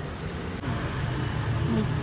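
Street traffic noise: a steady low rumble of passing road vehicles that grows louder about half a second in.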